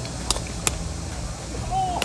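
Two sharp cracks of golf clubs striking balls, a fraction of a second apart, over a low outdoor rumble and background chatter.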